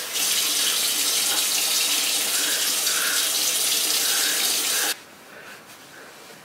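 Bathroom sink faucet running in a steady stream, shut off abruptly about five seconds in.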